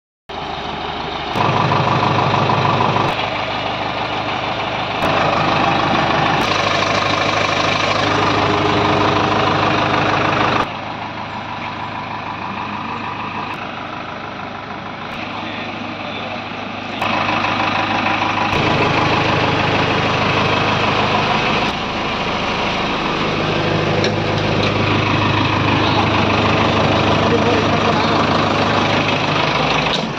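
JCB 3DX backhoe loader's diesel engine idling steadily. The sound changes abruptly several times, getting louder and quieter in steps.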